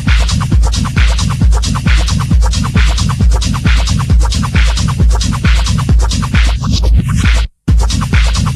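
Live techno: a steady four-on-the-floor kick drum about two beats a second under busy, crisp hi-hat and percussion patterns. Near the end a falling sweep leads into a sudden, very brief cut-out of all sound, and the beat comes straight back in.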